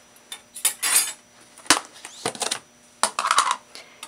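Cutlery and dishes clinking and knocking in a series of separate sharp clicks, with short rustles of handling in between.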